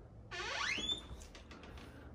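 A short squeak, rising steeply in pitch and lasting about half a second, from the hinges of a wooden pantry door as it is swung.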